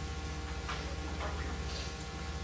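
A steady low electrical-sounding buzz with a fast, even pulse, over faint steady tones, with a few faint brief room noises about a second in.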